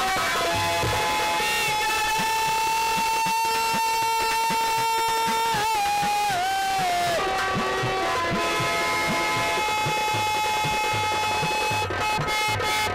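Nautanki stage music: a long high held note that wavers and dips near the middle, over repeated hand-drum strokes from the accompanists.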